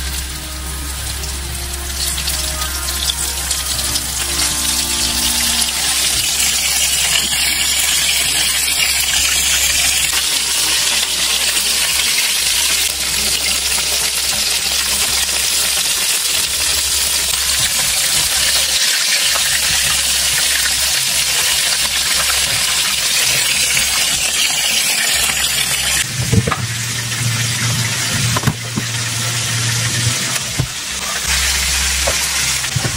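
Pastry rolls (briouat) frying in shallow hot oil in a frying pan: a steady, dense sizzle with crackling. About four seconds before the end the sizzle thins and a low hum comes in.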